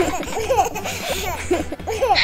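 People laughing, with overlapping high-pitched laughs repeating throughout.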